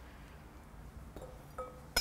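Mostly quiet, with a couple of faint short ringing tones and a light knock near the end as a steel kitchen knife is handled and laid down on a bamboo chopping board.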